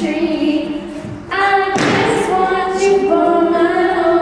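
Two female voices singing together into microphones, amplified through portable PA speakers, with long held notes and little or no backing music. A brief thud-like burst comes about two seconds in.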